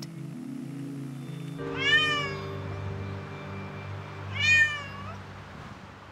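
A domestic cat meowing twice, about two and a half seconds apart; each meow is a short call that rises and then falls in pitch. Soft background music plays underneath.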